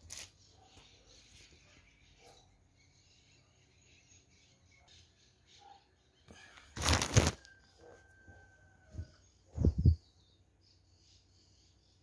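Handling noise from clothes and the phone being moved over a bed: two short, loud rustling bursts, about seven seconds in and just before ten seconds. Between them the room is quiet, with faint high chirps and a thin steady whistle lasting about a second and a half after the first burst.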